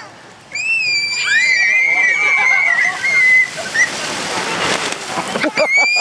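Children letting out a long high-pitched squeal, then a rising rush of water and wet plastic as an inflatable tube loaded with children slides down a wet plastic-sheet waterslide, with another short squeal at the end.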